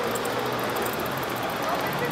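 Steady outdoor city background: a low hum of traffic with faint distant voices.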